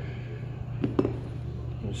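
Two light clicks close together about a second in, as a small polymer rail cover is handled against the rifle's slotted aluminium handguard, over a steady low hum.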